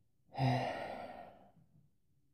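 A man's sigh: a brief voiced start trailing off into a breathy exhale that fades over about a second.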